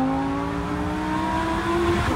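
Lamborghini engine pulling hard under acceleration, heard from inside the cabin, its pitch rising steadily.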